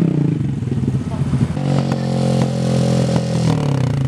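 Honda Grom's small single-cylinder engine running: its note falls as the bike slows at the start, then holds steady from a little before halfway and eases off near the end.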